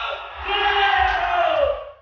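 A man's long, drawn-out shouted call to a crowd, held for over a second before its pitch slides down and it stops, with crowd noise around it.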